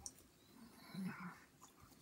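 Very quiet mouth sounds of someone chewing a bite of pizza crust, with a brief soft murmur about a second in.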